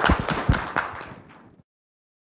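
Audience applauding, dying away and cut off to silence about a second and a half in.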